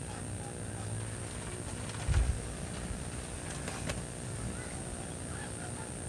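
Quiet racing-pigeon loft ambience: a steady high-pitched hum runs throughout. A single low thump comes about two seconds in, and a couple of faint clicks follow near four seconds.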